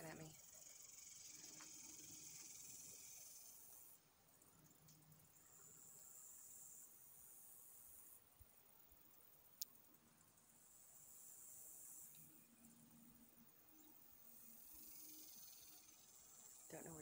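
Near silence with a faint, high-pitched insect buzz that swells and fades in long stretches. A single sharp click about ten seconds in.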